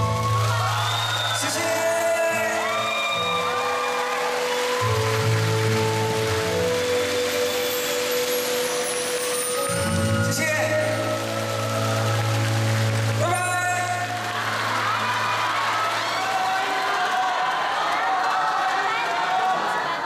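Live band playing the closing bars of a Mandarin pop ballad, with held notes over a steady bass line, while the concert audience cheers, whoops and applauds.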